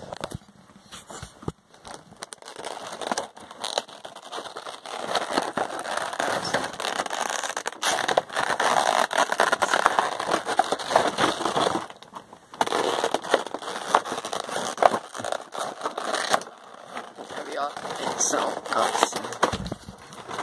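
Clear plastic packaging crackling and crinkling as it is handled close to the microphone, an irregular run of crackles broken by a few short pauses.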